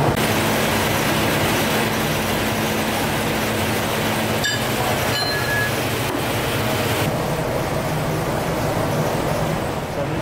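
Steady machinery noise of a drill ship's core-handling deck, a loud even rumble with a low hum. The sound changes abruptly a few times, and a brief high tone sounds about five seconds in.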